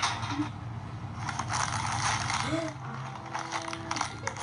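Metal shopping cart rattling and clattering as it is pushed, playing back from a video on a phone.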